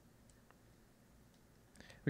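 Near silence: room tone, with a faint click about halfway through and a few faint ticks near the end.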